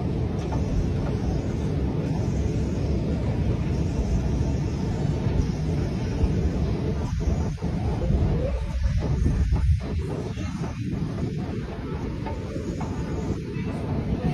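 Steady low rumble of underground station machinery heard while descending a long escalator, easing slightly about ten seconds in.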